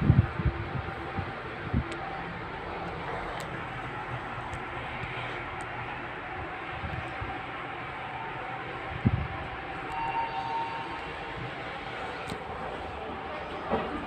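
Lift car travelling: a steady hum and rumble of the cabin in motion, with a few knocks, the loudest about nine seconds in, and faint steady tones from about ten seconds in.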